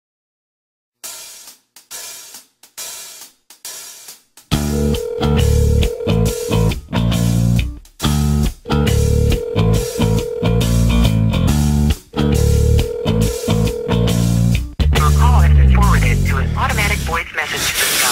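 Opening of a post-hardcore rock song: a quiet, choppy intro for a few seconds, then the full band comes in loud with distorted guitars and drums in stop-start hits, building near the end.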